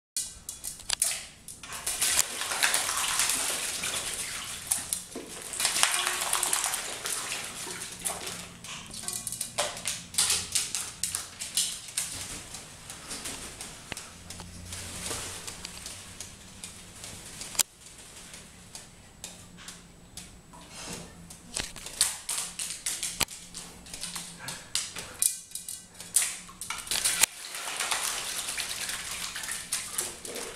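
A rook bathing in a shallow aluminium basin of water, splashing and shaking its wings in repeated bursts of a few seconds with short pauses between.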